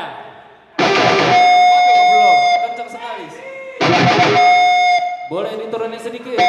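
Electric guitar chords struck hard and left to ring with a sustained note, once about a second in and again near four seconds, with quieter gaps between them.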